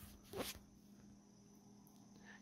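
Near silence: room tone with a faint steady hum, and one brief soft noise about half a second in.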